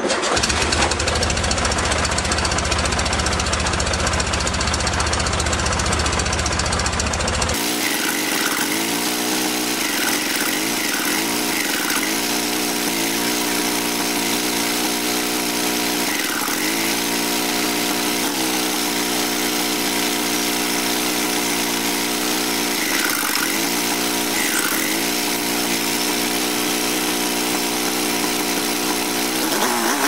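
Air-cooled VW flat-four (1745cc) with twin Dellorto FRD 34 carburettors running at idle on 50 idle jets, its speed dipping and recovering several times while the carburettor idle settings are worked on. For the first several seconds a heavy low rumble dominates.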